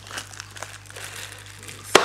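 A plastic packaging bag crinkling as a small wrapped part is handled and turned over, with one sharp click just before the end.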